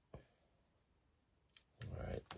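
One short, light click from dial calipers being handled on a cartridge case, otherwise near silence; a man's voice starts near the end.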